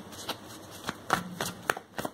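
Tarot cards shuffled by hand: a series of short, sharp flicks of the cards.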